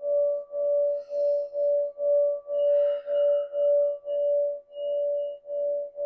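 Singing bowl ringing with one sustained tone that wobbles in loudness about twice a second.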